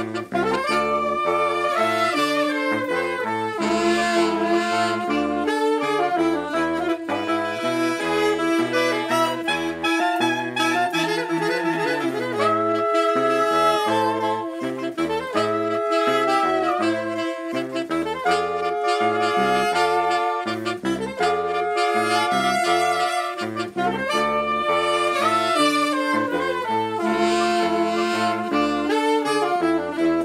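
Saxophone quartet with a clarinet playing an arranged tune together: a bouncing low line from the deeper saxophone under a note held through most of the passage, with melody lines moving above.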